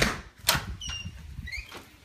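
A door being opened: a sharp knock at the start and another about half a second later, then a few short, high squeaks, some rising in pitch.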